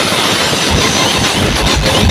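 Huge DJ speaker stacks playing at extreme volume, the sound overloaded into a dense distorted roar with irregular heavy bass thumps underneath.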